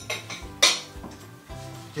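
A metal fork clinks once against a plate about half a second in, with a short ring, over background music with steady held notes.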